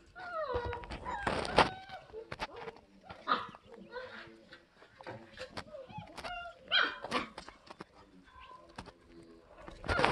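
German Shepherd puppies, five weeks old, whimpering and yipping in short high calls, several sliding down in pitch, among scattered clicks and knocks.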